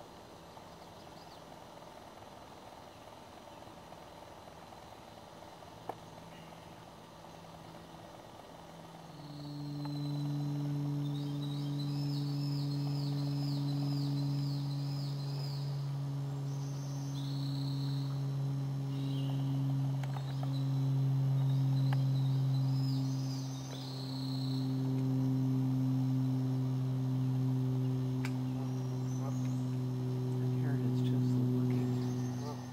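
A steady low hum with a few overtones, like a motor running, comes in about nine seconds in and holds to the end. Over it a small bird sings a quick run of about eight repeated high rising notes, followed by a few more short high calls.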